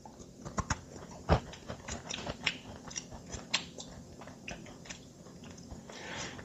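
A dry, cookie-like chocolate emergency ration bar being bitten and chewed: a sharp crunch about a second in, then irregular small crunches and clicks of chewing that thin out over the last couple of seconds.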